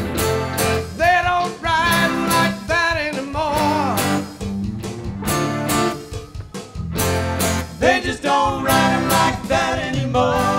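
Live rock band playing an instrumental break: strummed guitars, bass and drums, with a lead guitar line that swoops up in pitch and wavers.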